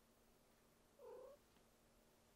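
A domestic cat gives a single short, faint meow about a second in.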